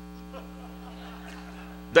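Steady electrical mains hum, one low pitch with a ladder of overtones, held at an even level; a man's voice comes back in just before the end.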